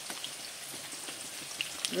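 Batter-coated chicken pieces frying in hot oil in a kadhai: a steady sizzle with fine crackling as the pieces finish frying.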